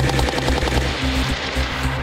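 A burst of rapid automatic fire from a machine gun mounted on a remotely operated tracked robot, fading out about a second and a half in.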